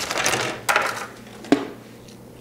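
Plastic hard-drive packaging being handled and opened: rustling and crinkling, then a single sharp click about one and a half seconds in.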